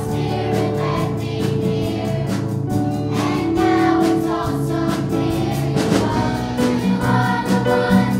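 A choir singing over an accompaniment with a steady beat.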